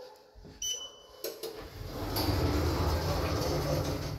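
Schindler 3300 lift: one high beep of about half a second as a floor button on the car's touch panel is pressed, then the doors slide shut and the car starts travelling up, with a steady low hum that grows louder about two seconds in.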